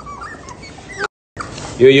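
Young puppy whimpering in faint, thin, high squeaks for about a second, followed by a brief dropout to silence; a voice starts near the end.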